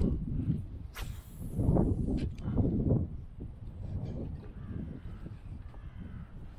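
Wind buffeting the microphone in uneven gusts, with a sharp click about a second in.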